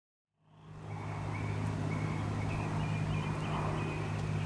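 Outdoor street ambience fading in: a steady low traffic hum with faint bird chirps over it.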